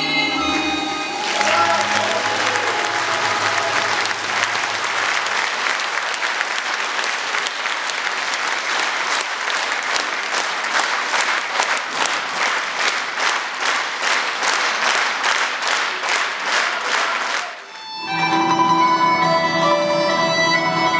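Concert audience applauding after the last notes of a song fade about a second in; the applause turns into even rhythmic clapping in unison, which stops abruptly near the end. A Russian folk-instrument ensemble then starts playing the next piece.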